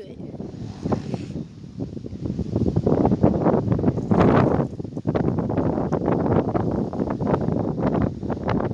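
Wind buffeting a phone's microphone: an uneven rumbling rush that gets louder about three seconds in.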